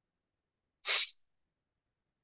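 A single short, sudden sneeze from a person, about a second in.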